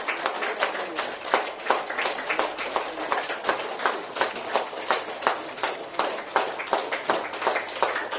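A roomful of people clapping their hands, many claps overlapping in a steady, unbroken patter.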